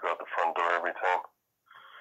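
Speech only: a person talking for about a second, then a short pause.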